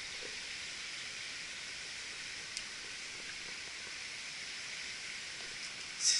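Steady hiss of a shallow stream's running water, with one faint click about two and a half seconds in.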